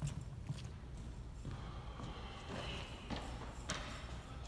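A few irregular light knocks over a steady low rumble.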